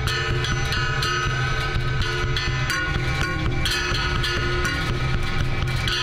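Leaf Audio Microphonic Sound Box tapped and scraped by hand and amplified through its effects: a steady stream of clicks and taps over sustained tones and a constant low drone.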